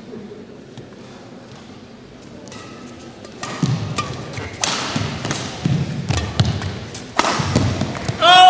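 Badminton rally: sharp racket hits on the shuttlecock and thuds of players' feet landing on the court. It is quiet for the first few seconds, then the hits and footfalls come louder and faster from about three and a half seconds in.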